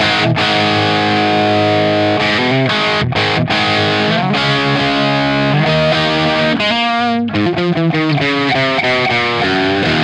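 Electric guitar playing distorted rock chords through a Marshmello Jose 3Way 50-watt modded amp head, unjumped on its regular channel, heard through a UA OX Box speaker emulation on its Greenback Punch setting with no effects. The chords change every half second or so and ring out.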